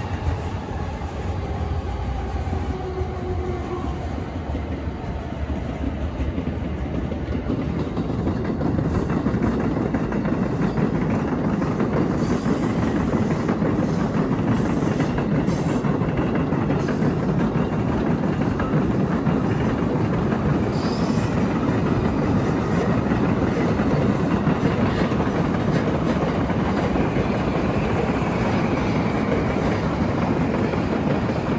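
Electric trains running on the tracks of Tokyo Station, heard from above as a steady rumble that grows louder about a quarter of the way in and stays loud. A faint falling whine sounds in the first few seconds.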